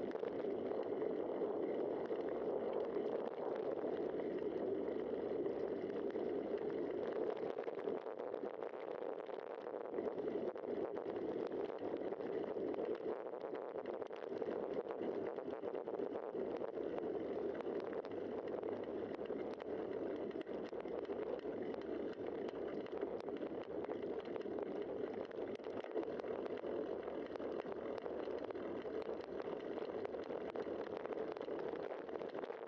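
Steady muffled rush of riding noise from a bicycle-mounted camera rolling along a paved road: wind over the camera and tyre hum on the asphalt, with no clear change in pitch or level.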